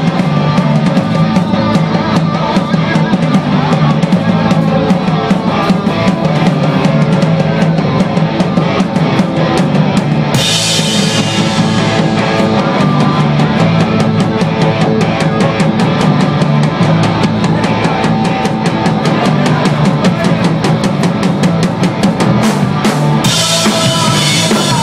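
Live rock band playing loudly: a drum kit keeping a fast beat with bass drum and snare, under electric guitars and bass. A crash cymbal hits about ten seconds in and again near the end.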